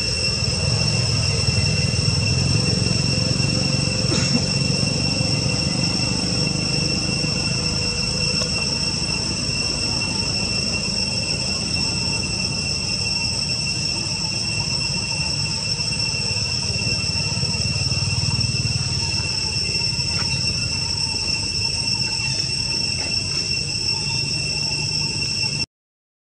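Steady high-pitched drone of forest insects, holding two or three unchanging pitches, over a low steady rumble; it cuts off suddenly near the end.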